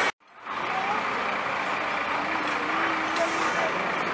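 Police SUVs rolling slowly past at parade pace, a steady mix of engine and tyre noise with faint voices of onlookers. The sound drops out briefly at the very start, then comes back in.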